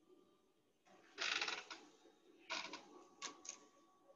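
Rustling and handling noises close to the microphone as a person settles in front of the computer: a burst of rustling about a second in, a shorter one a little later, and two brief knocks near the end.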